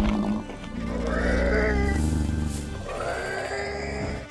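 Dinosaur sound-effect calls from a CGI Brachiosaurus: a long, low bellow from about a second in until nearly three seconds, then a shorter call. A brief knock comes at the very start, and background music plays throughout.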